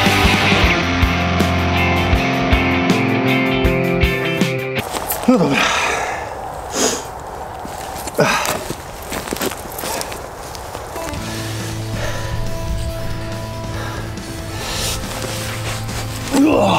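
Rock music with distorted guitar stops abruptly about five seconds in. It is followed by a handful of sharp, irregularly spaced chopping strikes: the SCHF37's heavy 6 mm carbon-steel blade cutting through a branch. A low steady tone comes in for the last few seconds.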